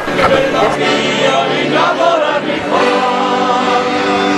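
A men's folk choir singing together, with accordion accompaniment; the song starts suddenly at the very beginning.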